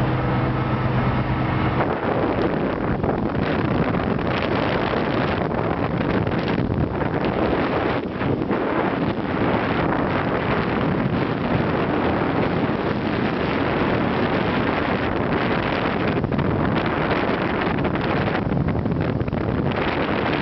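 Wind buffeting the microphone of a camera aboard a small aircraft in flight: a loud, rough, gusty rush. A steady engine drone with a clear pitch is heard for about the first two seconds, then the wind noise covers it.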